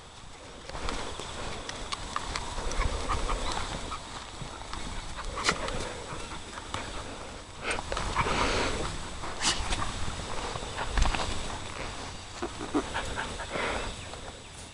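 A horse and dogs moving about on grass: irregular scuffling footfalls with a few sharp clicks.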